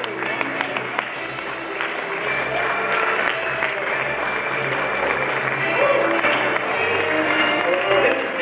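Audience applauding, with music playing and voices over the clapping.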